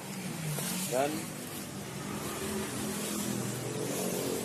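A motor vehicle's engine running with a steady low hum, with one short spoken word about a second in.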